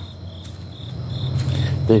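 Crickets chirping in a regular repeating pulse, over a low steady hum.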